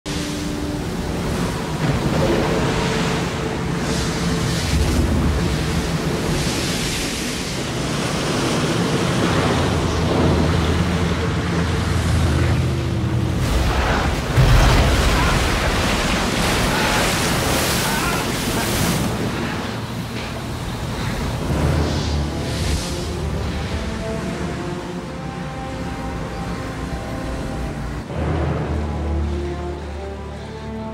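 Movie soundtrack: a musical score with sustained notes over storm sound effects of wind and heavy waves surging and crashing on a boat, with the loudest crash about halfway through.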